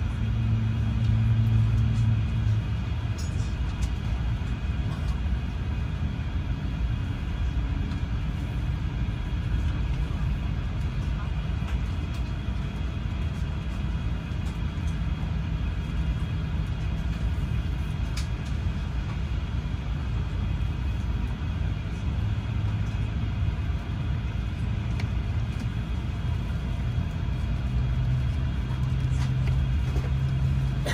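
Steady low drone inside an Airbus A350-900 cabin while the aircraft stands still: the air-conditioning and ventilation hum, with a few low steady tones and a few faint clicks.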